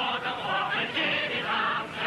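A choir of many voices singing in held, overlapping notes, with music.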